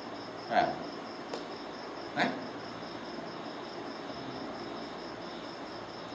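Insect chirping in a steady, fast, even high-pitched pulse, like a cricket's, under the room's background.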